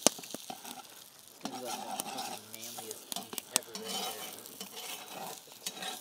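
Eggs and bacon sizzling in a seasoned cast-iron skillet over a campfire while a metal spatula stirs and scrapes through them. Sharp clicks sound as the spatula strikes the pan, scattered throughout.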